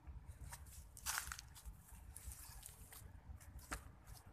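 Faint low rumble with a few brief rustles or clicks, the clearest about a second in and another near the end.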